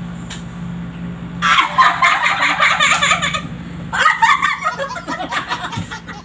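A group of women laughing together. A loud burst of laughter breaks out about a second and a half in, and another follows about four seconds in, over a steady low room hum.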